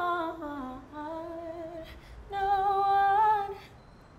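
A woman singing unaccompanied, with no clear words: a sustained note that slides downward, a few softer notes, then one long steady held note that fades out near the end.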